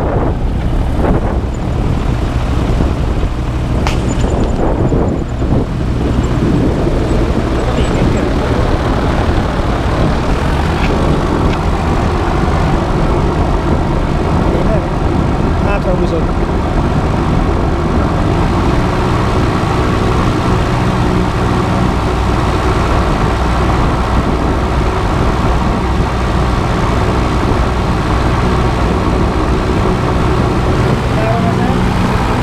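AutoGyro MTOsport gyroplane's engine running steadily as it taxis, heard loud from the open cockpit, with a sharp click about four seconds in.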